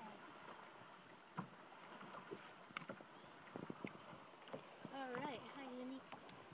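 Faint scattered clicks and taps of fishing pliers working a hook free from a bass's mouth, against quiet open air; a voice speaks briefly near the end.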